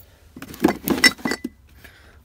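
Glass and plastic sauce bottles clinking and knocking against each other as they are shuffled in a drawer: a handful of sharp clinks in the first second and a half, one ringing briefly.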